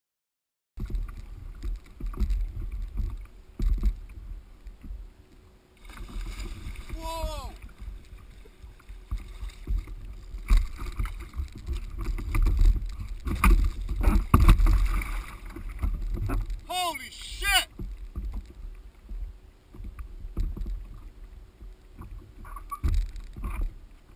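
Wind rumbling on a small camera's microphone and water splashing around a fishing kayak at sea while a fish is fought on rod and line. A man's voice gives two short falling calls, about a third of the way in and again near three quarters.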